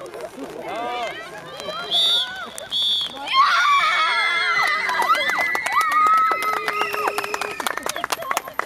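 Referee's whistle blown in two short blasts about a second apart, probably the final whistle, followed by girls' loud high-pitched cheering and shouting, with hand claps starting near the end.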